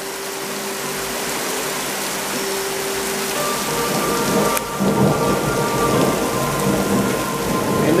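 Heavy rain pouring steadily on pavement and parked cars in a thunderstorm. A low rumble of thunder comes in about halfway through and carries on under the rain.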